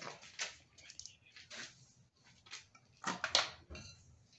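Soft scattered handling sounds: a few light knocks and rustles as a handheld rotary tool and its cord are moved and set down on a concrete workbench, the tool not running. The loudest knocks come about three seconds in.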